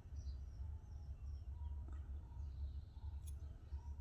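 Quiet room tone: a steady low hum with faint, short bird-like chirps now and then, and one light click a little after three seconds in.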